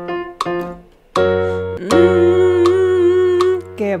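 Electric keyboard playing short repeated notes, then a sustained note from about a second in, over which a woman's hummed 'mm' glides up and holds with a slight wavering vibrato; a sung 'qué' begins at the very end. It is a vocal vibrato warm-up exercise sung on the pitch the keyboard gives.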